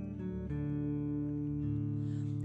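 Acoustic guitar playing ringing chords in a short instrumental gap, with a new chord struck about half a second in.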